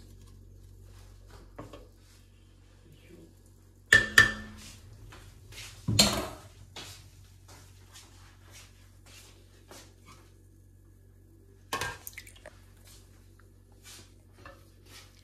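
A wooden spoon and metal ladle stirring in an aluminium pot, clinking and knocking against its sides in sparse bursts, loudest about 4, 6 and 12 seconds in, over a faint low steady hum.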